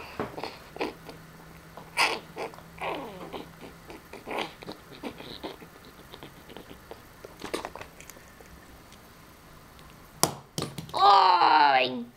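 Faint scattered voice fragments and handling clicks, then a child's loud, high-pitched, drawn-out shout with falling pitch near the end.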